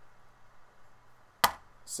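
A single die thrown onto a cardboard game board, landing with one sharp clack about one and a half seconds in.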